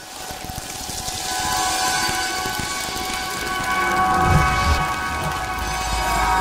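Sound design for an animated station ident: a hiss like rain swells up under several held synthesizer tones, with a deep rumble building in the last couple of seconds.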